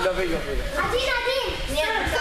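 Several young voices shouting and calling over one another, excited crowd noise in a large hall.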